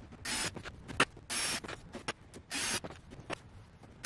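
Cordless drill match-drilling holes through thin aluminium skin with a number 40 bit, in three short bursts with small clicks between them.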